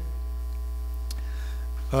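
Steady, low electrical mains hum, with fainter steady higher tones stacked above it; a faint click about a second in.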